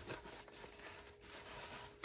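Faint rubbing and rustling of a nylon fanny pack's fabric and zipper being worked by hand, as a flap caught in the binding zipper is pulled free.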